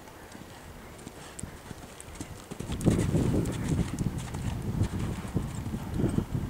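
Hoofbeats of a horse cantering on an arena's sand footing, joined by a louder low rumble from about three seconds in.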